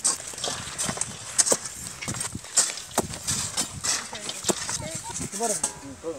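Iron bar being driven into hard, stony soil: irregular sharp knocks, several seconds of strikes. Voices come in near the end.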